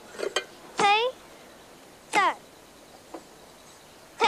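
A few short, high-pitched vocal calls, each gliding up or down in pitch, with quiet between them.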